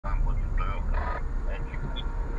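Indistinct talking inside a car cabin over the low, steady rumble of the car's running engine.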